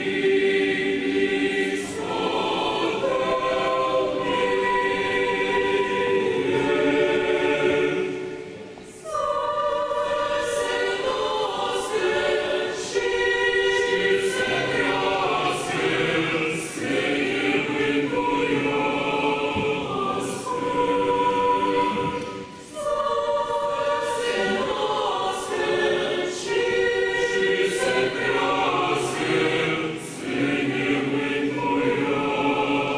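Mixed choir of young voices singing a Christmas carol (koliadka) in several parts, unaccompanied, in sustained chords. There are two short breaks between phrases: one about nine seconds in, the other a little past twenty-two seconds.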